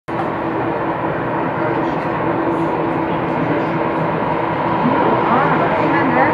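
Steady engine noise from a twin-engine passenger jet taxiing, with indistinct voices in the background.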